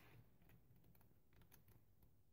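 Near silence, with a few faint, light ticks of sheets of paper being handled and leafed through.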